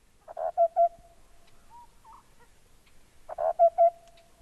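A hooting animal call sounds twice, about three seconds apart. Each call is a rough note, then two short notes and a fading held tone.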